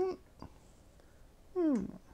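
A man's wordless "mm-hmm": a short hum rising in pitch at the start and, after a pause with a faint click, a second hum falling in pitch.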